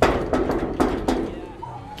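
Fist knocking on a corrugated sheet-metal door: about five knocks in quick succession over the first second or so, each ringing briefly.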